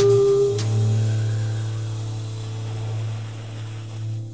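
Closing notes of a smooth jazz track: a held higher note stops about half a second in, leaving a low sustained bass note that slowly fades away.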